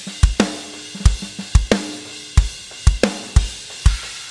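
Sampled drum kit from The Fairview Kit library playing back through Kontakt. It plays a groove of kick drum hits about every half second with snare hits over a steady cymbal wash.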